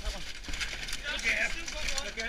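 Indistinct men's voices talking in the background, with scattered clicks and knocks of debris being moved.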